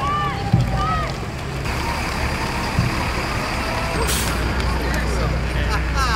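A parade vehicle's engine running with a low steady rumble, with a short sharp air-brake hiss about four seconds in. Short shouts and low thuds in the first second.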